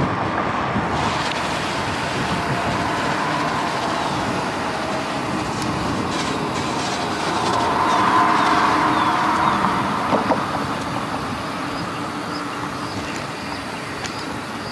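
Steady rolling road noise of riding along a paved city street: tyre hum with wind on the microphone, swelling louder about eight seconds in.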